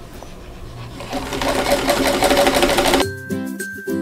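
Vintage Singer electric sewing machine starting up about a second in and running steadily as it stitches a seam through the quilt pieces, stopping abruptly about three seconds in. Background music then takes over.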